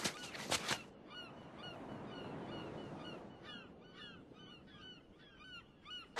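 Edited cartoon-style sound effects: a string of short, pitch-bending animal calls repeating about two to three times a second, with a few sharp knocks in the first second and a rushing noise from about one to three seconds in.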